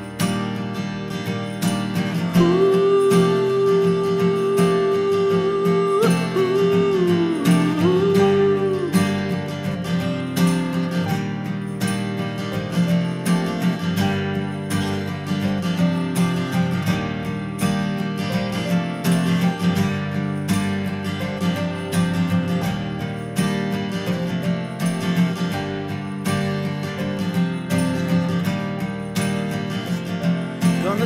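Instrumental break: an acoustic guitar strumming chords, with hand percussion ticking in time. From about two seconds in, a single lead note is held steadily for several seconds, then bends and wavers before it stops at about nine seconds.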